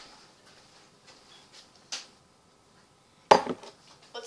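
A drinking glass is set down hard on a tabletop about three seconds in: one sharp knock, then a couple of smaller rattles. A faint click comes before it.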